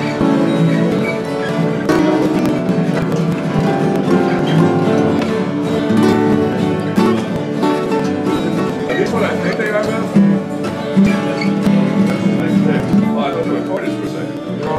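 Guitar in open D tuning, with notes played along one string while the open strings are left ringing together in a dense, sustained wash.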